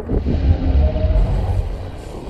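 Episode soundtrack: a deep, low rumble under faint music, with a faint held tone in the middle.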